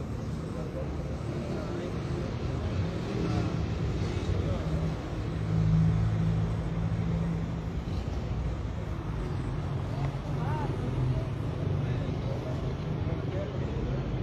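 Street traffic: a motor vehicle's low engine hum, louder for a couple of seconds about six seconds in, with faint voices in the background.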